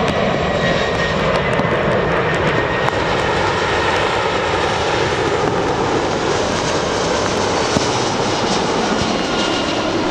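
Airbus A340-300 airliner's four CFM56 turbofan engines running at approach power as it passes low on final approach: a loud, steady jet noise with a faint thin whine that drops in pitch as the plane goes by.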